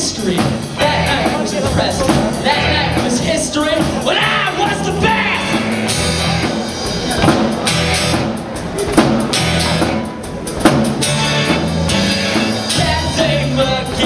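A rock band playing live with drum kit, electric guitars including a double-neck, bass and a singing voice.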